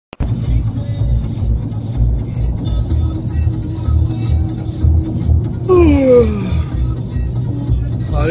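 Loud music with a heavy bass beat playing on a car stereo inside the car. About six seconds in, a sliding tone falls in pitch over about a second.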